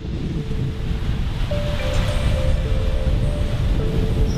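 Soft ambient music with a few faint held notes over a steady rushing noise with a low rumble, like wind or surf.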